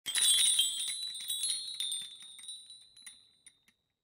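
A bright, shimmering chime jingle: high ringing tones with a sprinkle of small tinkling strikes, loudest at the start and fading out after about three and a half seconds.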